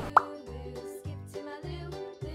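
A short rising pop sound effect just after the start, followed by light background music with steady notes and a low bass line.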